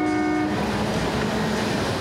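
Seattle Center Monorail train running past on its elevated beam, sounding a horn note that stops about half a second in. After that comes the steady noise of the train going by.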